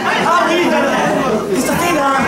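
Several voices talking over one another in a crowded room, with no music playing.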